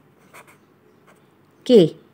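Pen scratching faintly on notebook paper while writing, with a slightly louder stroke about a third of a second in.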